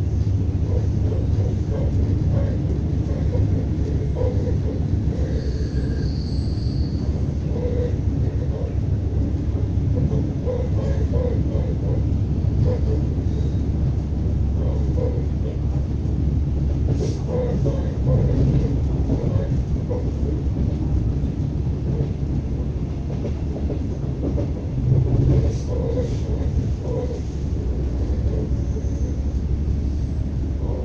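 ES2G Lastochka electric train heard from inside the carriage while running at speed between stations: a steady low rumble of the running gear on the track.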